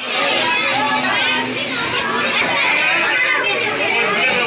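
A crowd of children's voices, many boys talking and calling out over one another in a steady clamour.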